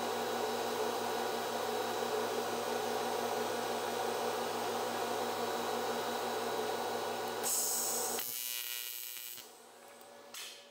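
An AC TIG welding arc on aluminum, buzzing steadily with a mains-frequency hum. The arc cuts off about eight seconds in, and a hiss fades away after it.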